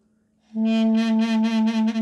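A mey (Turkish double-reed pipe) sounding one long held note that starts about half a second in. The note pulses steadily with a slow vibrato, about six swells a second.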